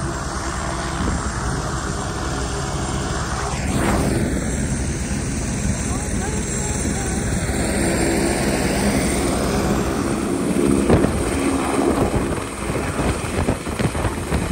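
A steady engine drone with a rushing noise over it, and a faint voice in the background. In the last couple of seconds the sound turns uneven, with buffeting knocks.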